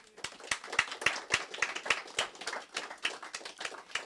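Audience applauding, starting abruptly and running on as a dense stream of individual claps.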